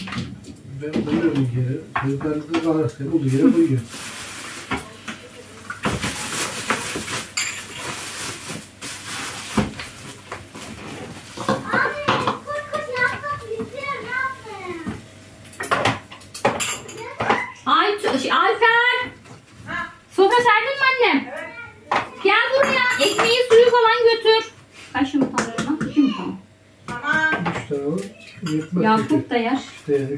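Kitchen clatter of cooking: a spatula working in a frying pan on the hob and dishes and utensils knocking, among people talking, some in high-pitched voices. A steady hiss runs for a few seconds about six seconds in.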